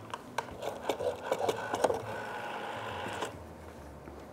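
An old desk telephone being handled: a run of irregular clicks and clatter as the handset is lifted and the dial is worked, then a steady mechanical whirr of about a second, like a rotary dial spinning back, that stops abruptly.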